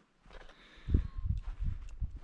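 Footsteps on a grassy path: soft, irregular low thuds starting about a second in.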